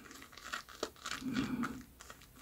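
Shaving brush being worked in shave soap lather, making a faint, irregular crackling and squishing. The lather is overly wet from too much water.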